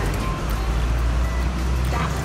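Low, steady rumble of a road vehicle going by, with claw-machine music playing underneath.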